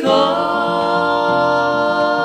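A woman and two men singing in close three-part harmony, holding one long sustained chord.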